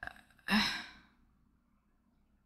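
A woman's short breathy sigh, about half a second long, about half a second in.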